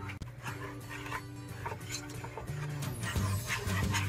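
Background music playing, with a wire whisk stirring thick melted chocolate and peanut butter in a metal pot, making light repeated strokes.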